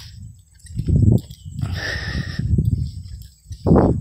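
A man's wordless vocal sounds: a breathy hiss in the middle and a short voiced sound, like a brief laugh, near the end, with low rumbling bumps on the phone microphone.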